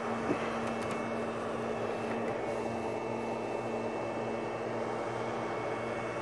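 Steady machine hum with a constant fan-like hiss, from running equipment or ventilation; one small click about a third of a second in.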